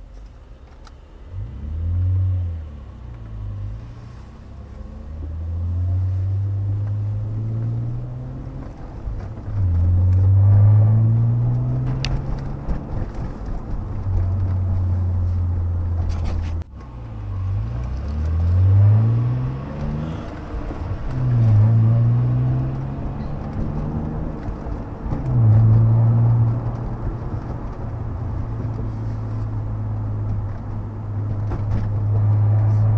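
Car engine heard from inside the cabin, accelerating again and again: its note climbs in pitch and drops back at each gear change, with steadier cruising stretches between. The sound cuts out suddenly for a moment about halfway through.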